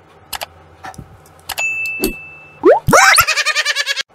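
Comedy sound effects: a few clicks, a short steady high beep, and rising boing-like glides. Near the end comes a loud, fast warbling sound that cuts off suddenly.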